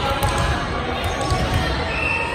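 A volleyball bouncing on a wooden gym floor, with players' voices echoing around the gymnasium.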